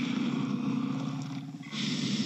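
A steady rushing rumble from the Facebook Portal as a fire-breathing dragon mask effect comes on over the video call, dipping briefly near the end.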